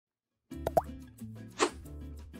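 Logo intro sting: music starts about half a second in with two quick rising pops over a held low tone, then a short swish near the end.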